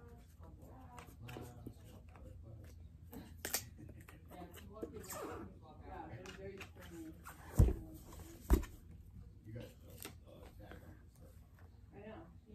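Handling noise from a small plastic camera being fiddled with: scattered light clicks and rustles, with two loud thumps about a second apart a little past the middle.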